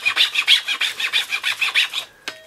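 Hand file rasping across the horn spout of a powder horn in quick back-and-forth strokes, about five a second, as the spout is shaped.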